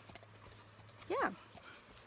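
A horse's hooves clip-clopping faintly at a slow walk, heard from the saddle.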